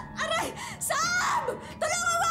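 A woman's voice wailing and whimpering in distress: three short cries that bend up and down in pitch, over faint background music.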